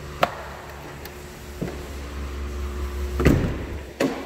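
Pickup truck cab door latch and handling noise: a sharp click about a quarter second in, a low rumble of movement, then a louder clack near the end as the crew cab's rear door is opened.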